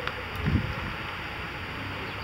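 Steady outdoor background noise with wind on the microphone, and a brief low sound about half a second in.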